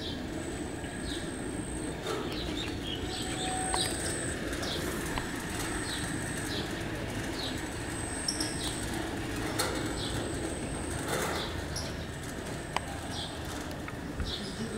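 Outdoor ambience of small birds chirping again and again over a steady low background rumble, with a few soft clicks around the middle.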